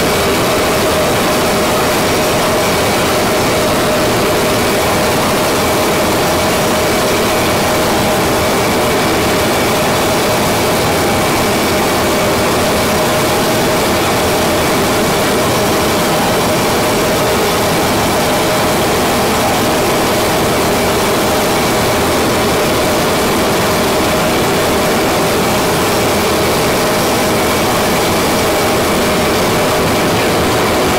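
Steady in-flight aircraft noise heard from aboard: engine drone and rushing air, unchanging throughout, with a faint steady hum running through it.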